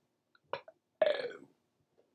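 A man's short burp about a second in, falling in pitch, after a faint click.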